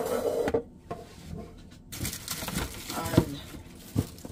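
Kitchen items being moved about on a countertop: a scraping slide at the start, then rustling and handling noise, with a sharp knock a little after three seconds in, the loudest sound.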